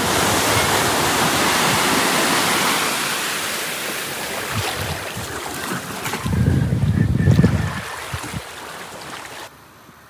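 Small waves washing up on a sandy beach: a steady hiss of surf that slowly fades. Between about six and eight seconds a low rumble of wind on the microphone rises over it, and near the end the sound cuts to quiet room tone.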